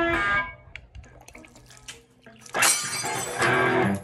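Electric guitar: a held, bent note rings and stops about half a second in, a quiet gap with a few small clicks follows, then a loud, bright chord sounds near the end.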